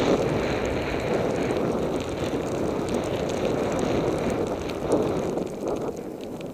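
Wind rushing over the camera microphone as a snowboard slides fast through deep powder: a steady, loud rushing noise that eases off near the end as the rider slows.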